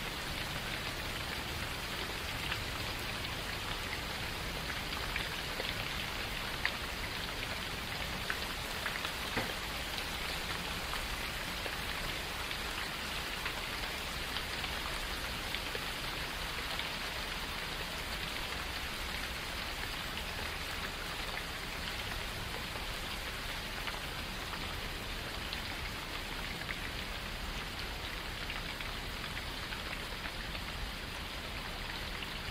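Steady, even rain falling, a dense patter with scattered individual drops ticking slightly louder here and there.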